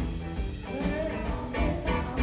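Live blues band playing: guitar, bass and drum kit, with a singer's voice gliding over them. Drum hits come through near the end.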